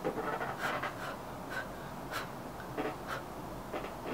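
A person blowing a series of short puffs of air to clear a stray string off a makeup brush and powder.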